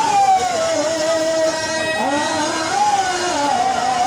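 A man singing an aarti, a Hindu devotional hymn, into a microphone, in long drawn-out notes that waver and glide up and down.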